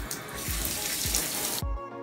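Bathtub tap turned on by its single-lever valve handle, water running hard into the tub, over background music with a steady beat. The water sound stops suddenly about one and a half seconds in, leaving only the music.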